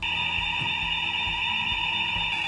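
Electronic fire alarm sounder giving one steady, unbroken, high-pitched tone with no pulsing or change in pitch: a building fire alarm signalling evacuation.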